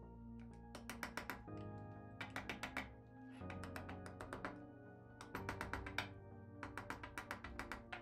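Plastic-faced mallet lightly tapping a drill press base in several quick bursts of taps, nudging the counterpart into line under the drill bit for fine adjustment. Background music plays throughout.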